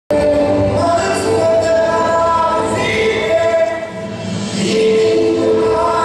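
Music with a group of voices singing together, holding long notes.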